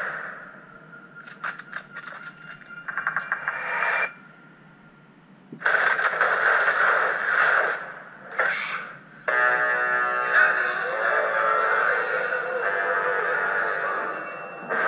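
Action-movie trailer soundtrack: faint clicks and a held tone, a near-silent pause, then a sudden loud noisy hit a little before halfway and another brief burst, followed by music with sustained chords for the last few seconds.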